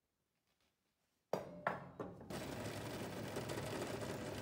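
About a second of near silence, then a few sharp knocks and a bench drill press motor starting up and running steadily, with a low hum.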